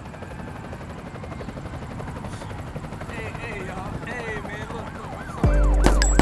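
Steady background noise with wavering siren glides rising and falling from about halfway. Near the end a loud hip-hop beat with heavy bass suddenly comes in.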